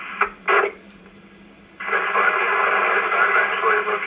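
Ham radio transceiver's speaker receiving a 10-meter repeater: a short clip of a distant voice, a second of near quiet, then static comes in abruptly about two seconds in as another station keys up, with a weak voice under the hiss.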